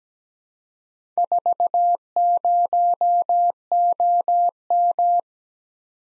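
Morse code sent as a pure electronic beep tone: four dots and a dash, five dashes, three dashes, then two dashes, spelling 4, 0, O, M. It starts about a second in and stops about a second before the end.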